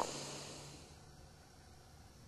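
Near silence: faint room tone, with a faint low hum that dies away about half a second in.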